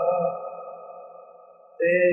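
A man's voice singing Punjabi Sufi poetry, holding a long note that fades away, then taking up the next line abruptly near the end.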